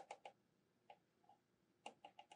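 Faint clicking of a control knob being turned to raise the Helmholtz coil current: a quick run of clicks at the start, a lone click about a second in, and another quick run beginning near the end.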